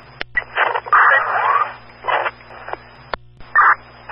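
Fire dispatch two-way radio channel between messages: a loud burst of hissing static with garbled, unreadable audio about a second in, then shorter bursts, with sharp clicks as transmissions key up and cut off.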